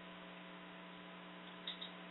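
Faint steady electrical hum with a light hiss on the audio line, and two faint short sounds near the end.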